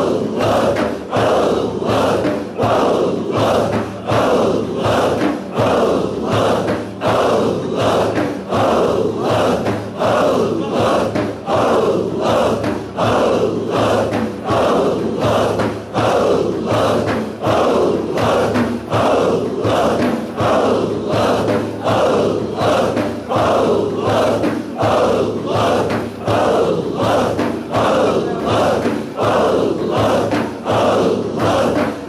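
Group Sufi dhikr chanting: many voices in unison repeat a short chant in a steady, pulsing rhythm of roughly one and a half beats a second.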